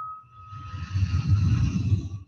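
Closing sound effect of a promotional video: a held tone fades out about a second in, while a low rumbling whoosh swells up beneath it and starts to die away near the end.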